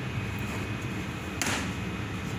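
A single short knock about one and a half seconds in, over a steady low room hum.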